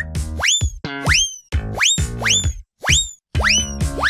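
Background music made of repeated quick rising swoops, like cartoon boing effects, several each second, over steady held notes.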